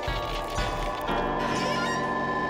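Opening theme music with held notes. A new set of sustained notes comes in about a second in.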